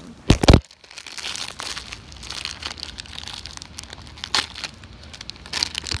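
A couple of loud knocks about half a second in, then a foil blind-bag packet crinkling and tearing as it is pulled open by hand.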